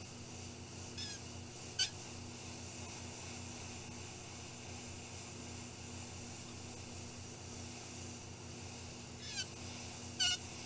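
Steady hiss of an Iwata gravity-feed airbrush spraying paint through a stencil, over a low steady hum. Three brief high squeaks, each falling in pitch, come about one second in, just before two seconds and near the end.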